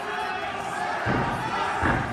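Two low thuds less than a second apart as a gymnast's feet strike a sprung floor during a tumbling pass, over the murmur of a crowd in a large gym.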